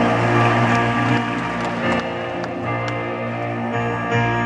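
Orchestra playing a soft introduction of held chords, changing about halfway through, recorded live from the audience.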